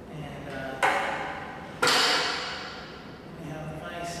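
Metal parts of a dry-cut metal saw knocking together as the motor head and its two-piece blade guard are moved by hand: two clanks about a second apart, the second louder, each leaving a ringing tail that fades away.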